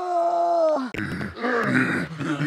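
A man's long, held cry at a steady pitch, cut off about a second in, then rougher, lower grunting and groaning as he struggles while being held down.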